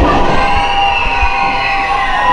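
Crowd in a hall shouting and cheering, with a few long drawn-out yells held over the din.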